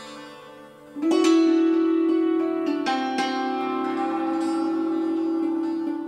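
Hammered dulcimer struck with beaters, its notes ringing on over each other. About a second in, the playing grows suddenly louder and a strong low note is held beneath the struck melody.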